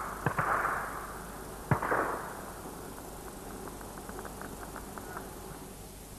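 Gunshots, most likely from a shotgun fired at flying game: a sharp crack about a third of a second in and another near two seconds in, each with a short rushing tail. A run of faint light ticks follows for about two seconds.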